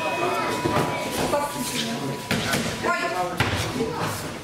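Voices calling out in a large, echoing gym hall during a kickboxing bout, broken by several sharp thuds of gloved punches and kicks landing.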